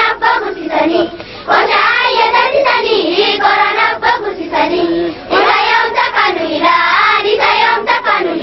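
A group of young girls singing together in unison, in sung phrases broken by short pauses.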